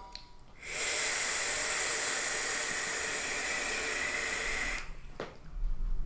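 A long drag on a mechanical mod with a rebuildable dripping atomizer (0.22-ohm dual-coil nichrome build): a steady airy hiss, with a faint whistle in it, of air pulled through the atomizer for about four seconds. A short click follows near the end, then the low breathy rush of the cloud being exhaled.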